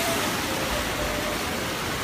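Rushing, churning water of a surge sweeping down a pool: a steady, full hiss of white water.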